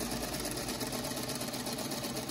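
Singer sewing machine running steadily at an even speed, stitching a seam through two layers of fabric.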